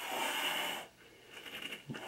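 Domestic cat hissing once, a harsh hiss lasting under a second.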